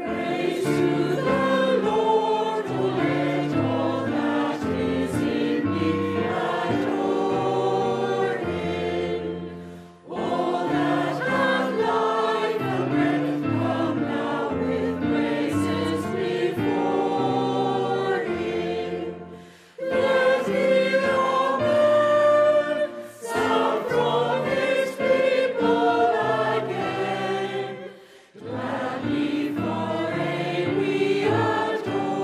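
Mixed choir of men's and women's voices singing a hymn with piano accompaniment. It is sung in lines, with a short break between lines about every nine seconds.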